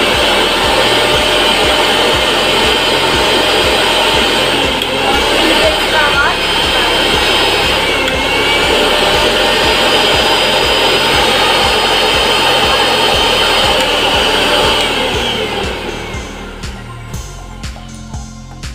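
Bajaj GX 1 mixer grinder motor running with no jar fitted, a loud steady whine that shifts in pitch briefly about eight seconds in, then switched off about fifteen seconds in and winding down.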